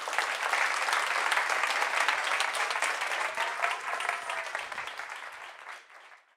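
Audience applauding steadily right after the talk's closing "thank you", the clapping thinning and fading out near the end.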